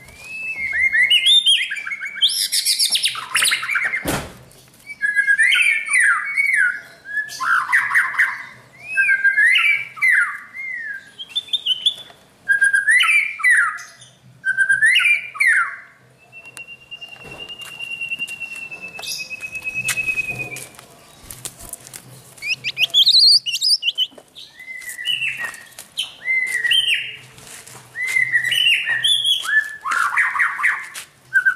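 Caged white-rumped shama singing: a run of short, varied whistled phrases, one every second or two, with one long steady whistle lasting about four seconds past the midpoint. A single sharp thump about four seconds in.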